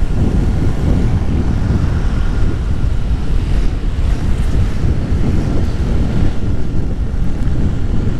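Wind buffeting the microphone of a moving motorcycle, a loud, steady, low rumble that covers most other sound.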